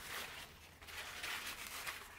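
Paper towel rubbed back and forth over a clamped steel knife blade, wiping it down during hand sanding: faint rustling swishes, roughly one every half second.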